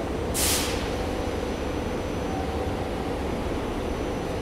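SEPTA Regional Rail electric railcar standing at the platform, its onboard equipment giving a steady hum, with one short sharp hiss of air, typical of an air-brake release, about half a second in.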